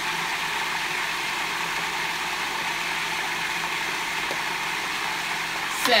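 Cuisinart food processor motor running steadily, blending chickpeas, tahini and lemon juice into a thick hummus purée.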